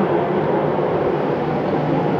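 Workshop fume extractor fan running steadily, a continuous rushing air noise with a low hum under it.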